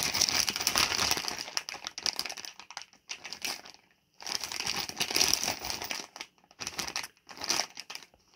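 Clear plastic parts bags from a radio-control car kit crinkling as they are handled, in rustling bursts with a brief pause about halfway through and a few shorter gaps near the end.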